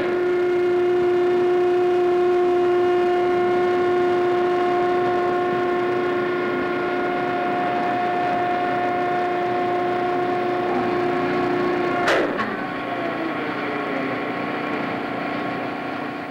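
A single steady pitched tone, held without wavering for about twelve seconds, then cut off by a sharp click and followed by a fainter, lower steady tone.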